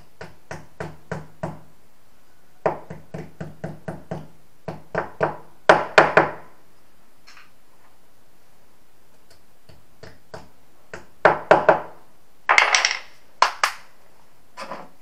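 Hammer driving wall plugs into drilled holes in a masonry wall: runs of sharp blows, several a second, with a pause of a few seconds in the middle and a louder flurry near the end.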